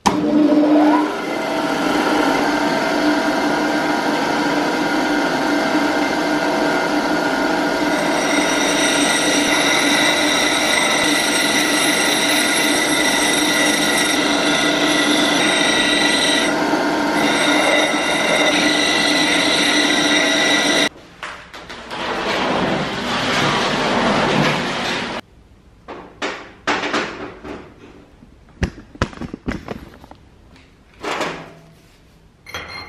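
Bench grinder running with a steady whine while a steel part is ground against the wheel; the sound cuts off suddenly about two-thirds of the way through. A few seconds of rougher grinding noise follow, then scattered clinks of small metal parts being handled.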